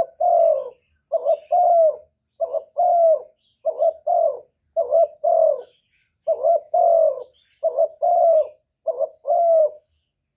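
Spotted dove cooing in a steady series, about eight two-note coos, each a short note followed by a longer one, roughly one per second.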